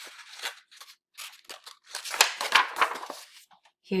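Paper pages of a softcover piano lesson book being turned by hand: rustling and crackling, loudest about two to three seconds in.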